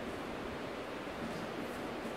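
Steady background hiss with no distinct sounds: the room tone of a pause in speech.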